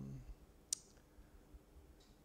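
A single sharp click a little under a second in, over quiet room tone.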